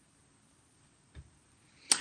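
Near silence with a faint low thump about a second in, then a short sharp click followed by a brief hiss near the end.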